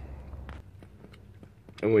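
Faint scattered clicks and rustles of handling under a low hum that stops about half a second in; a man starts speaking near the end.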